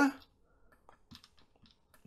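A few faint, short clicks of a computer mouse as a chart is scrolled and navigated.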